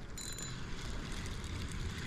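Spinning reel being cranked, with a brief burst of clicking about a quarter-second in, over a low steady rumble.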